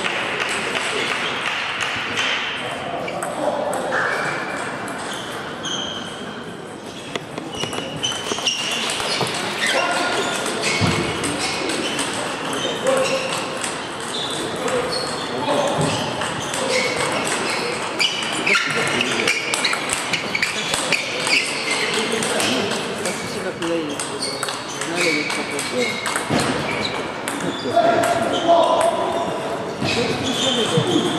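Celluloid-type table tennis balls clicking off rubber bats and bouncing on the tables in rallies, many irregular sharp pings overlapping from several tables in a large, echoing hall.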